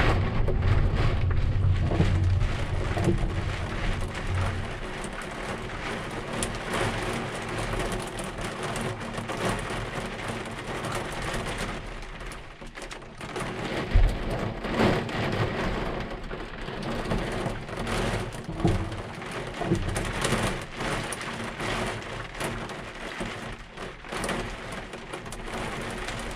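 Hard rain beating on an excavator cab's roof and windows, heard from inside the cab, over a low steady engine hum that is stronger for the first few seconds. One sharp knock about halfway through.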